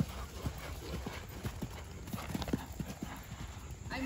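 Hoofbeats of a palomino horse cantering on the sand footing of a riding arena: a run of soft, uneven thuds, several a second.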